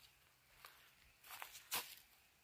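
A few faint footsteps on dry fallen leaves, the loudest near the end.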